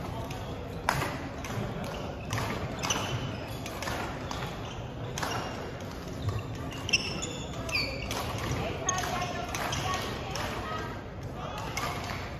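Badminton court sounds: sharp racket-on-shuttlecock strikes and short squeaks of sports shoes on a wooden floor, heard over background chatter in a large echoing sports hall.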